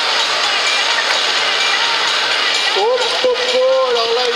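Large crowd chattering in a steady din of many voices, with one man's voice calling out about three seconds in and holding a long drawn-out note.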